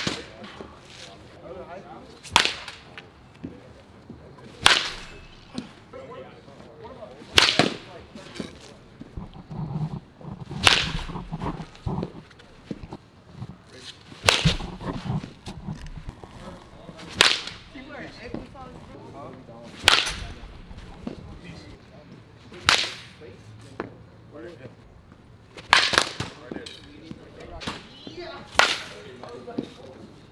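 Baseball bat hitting balls in a batting cage: a sharp crack every two to three seconds, about a dozen hits in all.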